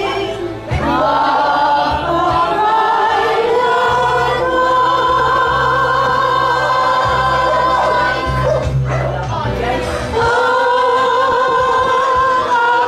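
A group of women singing together in unison, holding long drawn-out notes, with a short break about nine seconds in before they come back in.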